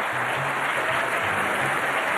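Studio audience applauding, with music underneath made of short, low held bass notes.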